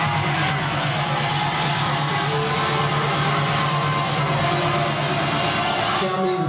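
Electronic dance music played loud over a nightclub sound system, with a steady low bass note under a dense wash of noise and crowd sound. The noise stops abruptly at the very end.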